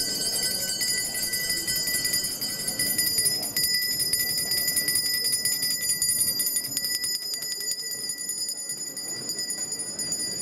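A small handbell rung continuously with rapid repeated strokes, its high tones ringing on steadily.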